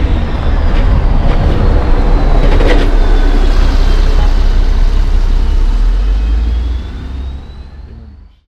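City bus driving past close by: a deep engine rumble with road noise and a faint whine that dips and rises in pitch, one knock a little under three seconds in, then the sound fades away near the end.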